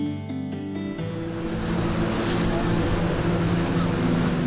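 Gentle background music stops about a second in, giving way to a steady rush of water and wind over the low, even drone of a motorboat's engine running on open water.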